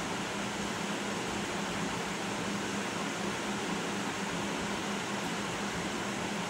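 Steady indoor background noise: a constant low hum under an even hiss, with no distinct events, typical of a running fan.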